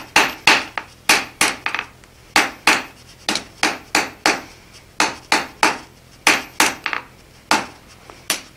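A hand hammer striking a hot bar on an anvil in short runs of blows, about three a second, with brief pauses between runs. The blows are knocking down the bar's corners to chamfer them.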